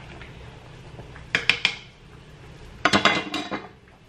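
A makeshift stirrer clinking against a cooking pot on the stove: a few sharp, ringing clinks about a second and a half in, then a quicker cluster about three seconds in, over a faint steady hiss.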